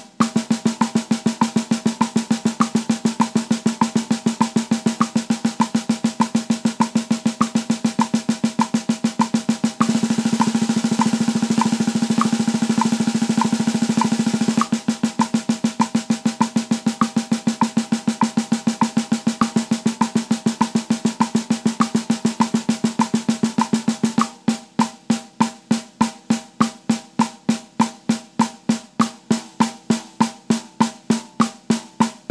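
Snare drum played with sticks at 100 BPM in a subdivision exercise: steady sixteenth notes that double to thirty-second notes, a fast near-roll, from about ten to fifteen seconds in, drop back to sixteenths, then to eighth notes for the last six seconds. A light click marks every beat throughout.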